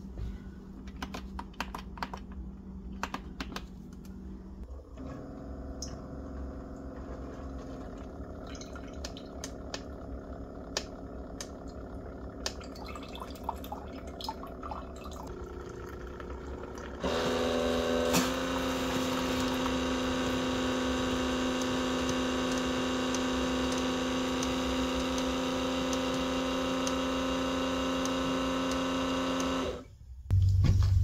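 Single-serve coffee maker brewing: a few clicks as its buttons are pressed, then the machine hums steadily. About halfway through the hum grows louder as coffee streams into a ceramic mug, and it cuts off just before the end.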